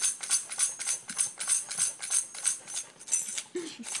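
A tambourine being shaken rapidly, its metal jingles rattling about three to four times a second.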